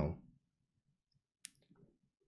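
A single sharp computer mouse click about one and a half seconds in, followed by a couple of much fainter ticks, against near silence.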